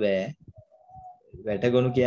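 A man's voice speaking slowly in Sinhala, with some drawn-out, held syllables, in two stretches separated by a pause about half a second in. A faint, short, steady tone sounds during the pause.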